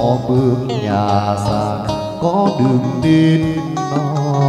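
Chầu văn ritual music: a sung, chant-like melody with plucked-lute accompaniment (đàn nguyệt), the music that drives a hầu đồng spirit-possession dance.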